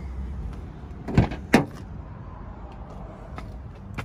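Rear side door of a Mitsubishi Pajero Sport being opened: two sharp clicks of the handle and latch releasing, close together about a second in, over a low steady rumble.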